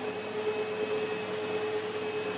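Sebo X7 upright vacuum cleaner running as it is pushed over a rug: a steady whirring noise with a constant mid-pitched whine.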